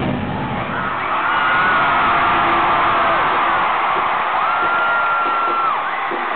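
Large arena crowd cheering and screaming, with a few high-pitched screams held for a second or more above it. The band's music drops out in the first second.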